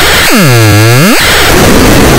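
Loud, harsh distorted noise from a processed cartoon soundtrack. Between about a third of a second and just past one second, a pitched tone swoops down and back up inside the noise.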